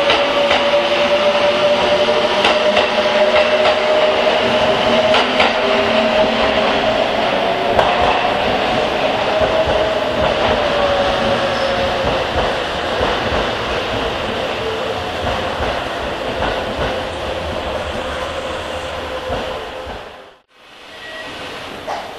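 Kintetsu limited express electric train pulling away along the platform: a steady whine that climbs a little and then falls back, with scattered wheel clacks, fading as the train draws off. The sound drops out briefly near the end.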